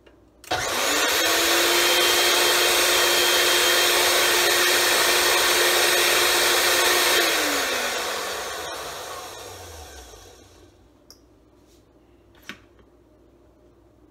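Countertop blender motor spinning up with a quick rising whine, running steadily at full speed for about six and a half seconds while blending cereal, garlic bread and milk, then switched off and winding down in pitch over about three seconds. A few small knocks follow near the end.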